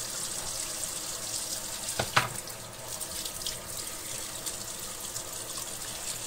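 Water running steadily from a kitchen tap into a sink as hands are washed of the oily marinade, with two brief knocks about two seconds in.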